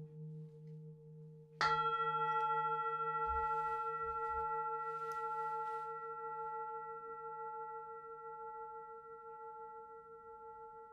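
Large metal singing bowl, still humming from an earlier stroke, struck once with a padded mallet about a second and a half in. It rings with several steady overtones that slowly fade.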